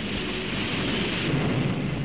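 A steady rushing noise that swells slightly at the start and then holds, strongest in the upper-middle range with a low rumble beneath.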